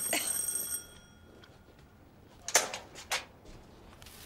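Electric doorbell ringing with a steady, high ring that stops about a second in. About two and a half seconds in come two short clicks from the front door being unlatched and pulled open.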